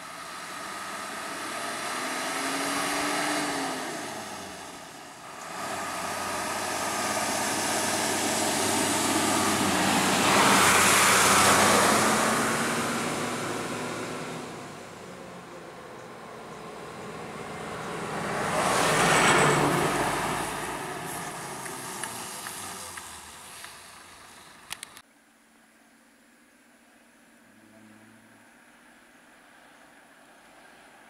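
Road vehicles passing one after another: engine and tyre noise swells and fades three times, loudest about a third of the way in and again about two-thirds in. Near the end the sound cuts off suddenly to a faint low hum.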